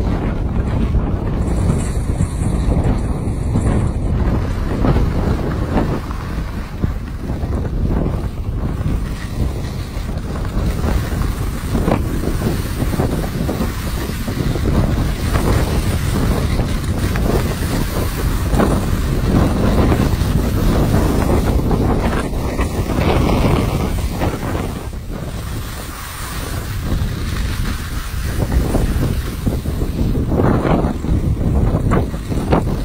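Wind buffeting the microphone on a fast ski run, with skis hissing and scraping over the snow through repeated turns.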